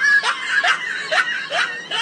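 A woman laughing in short bursts, about two a second, each falling in pitch.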